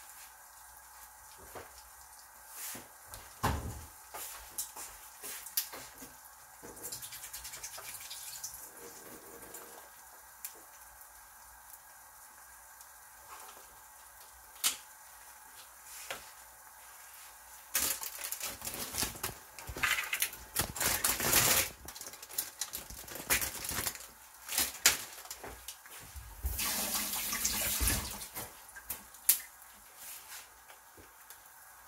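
Egg-coated bread frying in oil in a pan, with scattered crackles and pops. It grows louder and denser in two spells, about two thirds of the way through and again near the end.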